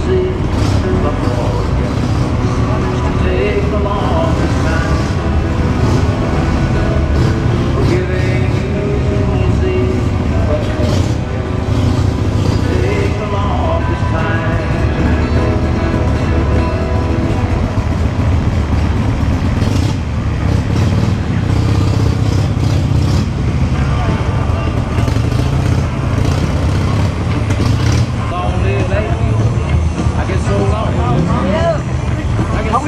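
Motorcycle engine running steadily at low speed, heard from on board as the bike rolls along, with indistinct voices around it.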